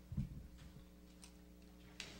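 Handling noise at a lectern over a steady electrical hum: one low thump about a quarter second in, then a few faint ticks.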